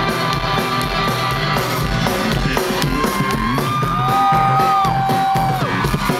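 A rock band playing live: electric guitars and drums in a passage with no singing. From about halfway in to near the end, two long high notes are held one above the other.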